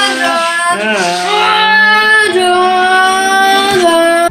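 A high voice singing long held notes that step to a new pitch a couple of times.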